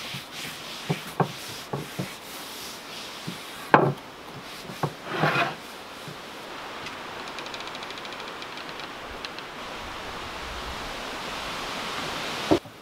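A wooden board knocked and set down on a wooden plank counter several times, the loudest knock about four seconds in, and a cloth rubbing across the board. After that comes a steady hiss that slowly grows louder.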